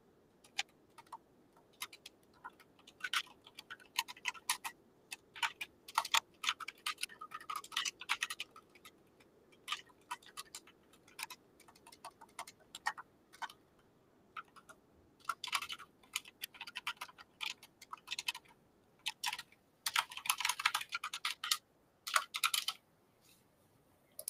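Typing on a computer keyboard: irregular runs of key clicks broken by short pauses.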